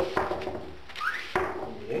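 Damp newspaper rubbed up and down on a mirror's glass: sharp rustling strokes and a short rising squeak about a second in.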